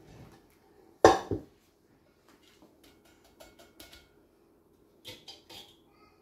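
Kitchen utensils clattering: two sharp knocks about a second in, then scattered light clicks and taps, as a plastic mesh strainer is lifted off a glass pitcher and put into a steel pot.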